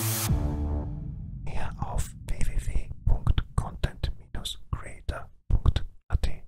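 Background music stops right at the start and fades out over the first second. A whispered voice then speaks in short breaks for about five seconds.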